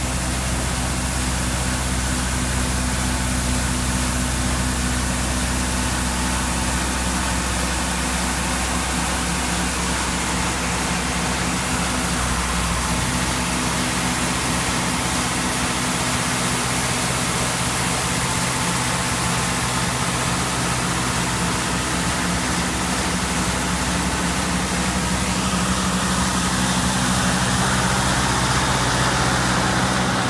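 Broce RJ300 four-wheel road broom running steadily as it drives along, its engine note mixed with a broad hiss from the eight-foot rotating brush sweeping the pavement. It grows slightly louder near the end.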